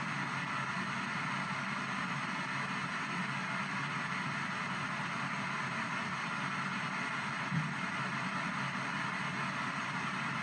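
P-SB7 ghost box radio sweeping the FM band in reverse, giving a steady hiss of static from its small speaker, with one brief louder blip about seven and a half seconds in.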